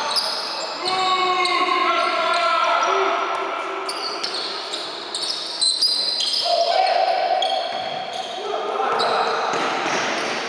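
Indoor basketball game in a large hall: sneakers squeaking on the court in many short high squeaks, a basketball bouncing as it is dribbled, and players calling out.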